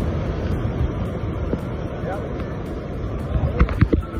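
Ocean surf washing in and out at the water's edge, with wind rumbling on the microphone. A few sharp knocks near the end.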